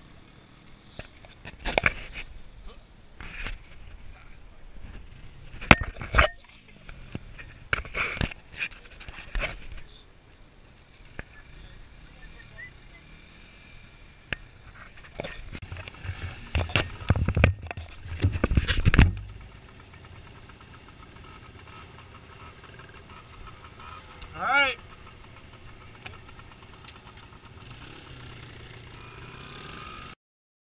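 Small dirt bike engines running at a trail-ride start, with loud knocks and bumps on the helmet-mounted microphone and a burst of revving about 16 to 19 seconds in. After that a steadier engine drone as the bike rides down the dirt track.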